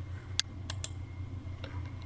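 About four light, sharp clicks of a computer mouse, the loudest about half a second in, over a low steady hum.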